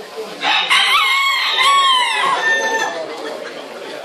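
A cockerel crowing once: a single loud call of about two and a half seconds, starting about half a second in, rising and then falling away at the end.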